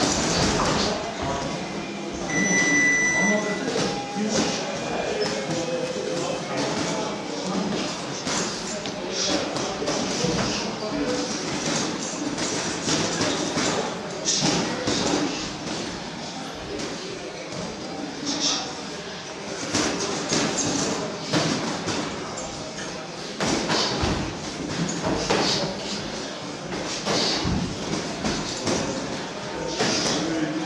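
Boxing sparring: irregular thuds of gloved punches and footwork on the ring floor, with indistinct voices in the room and a short high beep a couple of seconds in.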